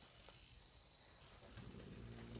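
Near silence: room tone, with a faint steady low hum coming in near the end.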